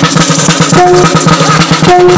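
Maguindanaon kulintang ensemble playing: a drum beaten rapidly with two sticks under the ringing of bossed gongs, with a short held gong note about a second in and again near the end.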